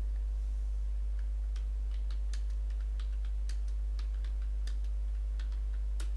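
Computer keyboard typing: irregular, separate key clicks as a short command is typed, over a steady low hum.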